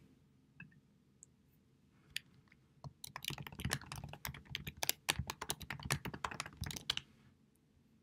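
Typing on a computer keyboard: a few single clicks, then a quick run of keystrokes starting about three seconds in and lasting about four seconds, stopping suddenly.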